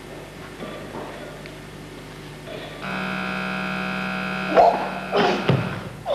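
A steady buzzer-like tone holds for about two seconds, then loud shouts break out twice near the end as a weightlifter pulls the barbell into the clean.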